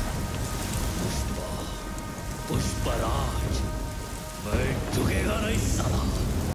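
Film soundtrack ambience: a steady rain-like hiss over a deep rumble, with a held musical drone. Brief rising and falling tones come through about three seconds in and again about five seconds in.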